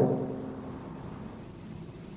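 The end of a man's speaking voice dies away in the room's echo over about a second, leaving a faint steady background hiss.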